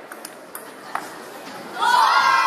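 Celluloid table tennis ball clicking off bats and table in a rally, three sharp clicks in the first second, then a loud high-pitched shout breaks out near the end as the point is won.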